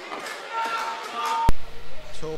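Pitch-side sound of a football match: faint players' shouts across the pitch. About a second and a half in, a single sharp click marks an audio edit.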